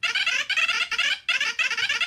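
A cartoon robot character's gibberish voice: rapid, high, squeaky chatter standing in for speech, in a few quick runs with brief breaks between them.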